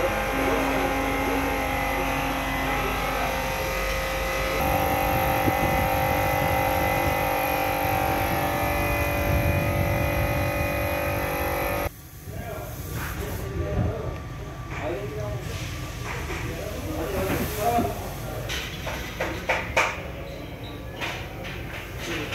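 A steady mechanical hum with several held tones that cuts off abruptly about halfway through. After it come indistinct background voices and scattered sharp clicks.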